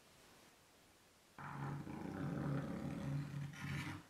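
Stick of chalk dragged in an arc across a blackboard, skipping and chattering so that it leaves a dotted line: a low, buzzing rattle that starts about a second and a half in and lasts about two and a half seconds.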